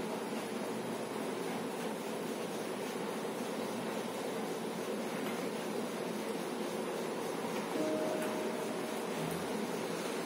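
Electric ceiling fan running, a steady even hum and whoosh with room hiss.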